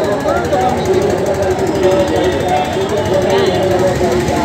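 A steady, rattling engine drone with indistinct voices talking over it.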